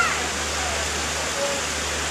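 Steady rush of falling water, with faint distant voices underneath.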